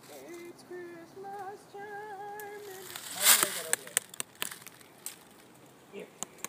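A dropped phone being handled in dry leaf litter. About three seconds in there is a loud rustling crunch, then several sharp clicks and knocks of handling. Before that, a distant voice holds a few drawn-out, wavering notes.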